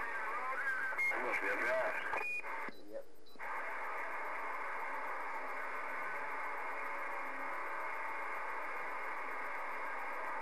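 Galaxy radio receiver playing a distant station's voice, too garbled to make out words, for about two seconds. The voice ends in a brief beep, and after a short dropout the receiver gives steady static hiss.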